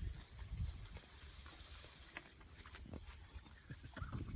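Faint wind rumble on the microphone with light rustling of tall grass and leaves brushing past, and a few soft clicks about two and three seconds in.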